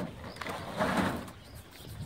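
A knock, then about a second of scraping and rattling as a petrol line trimmer and blower are shifted and lifted out of a metal-sided trailer bed.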